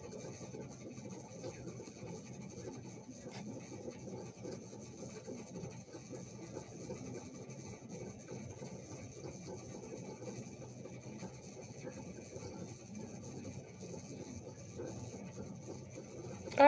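Quiet room tone: a steady low hiss and hum, with a faint click about three seconds in.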